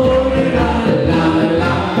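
Live band music led by a Steirische Harmonika (Styrian diatonic button accordion), with double bass, and voices singing together.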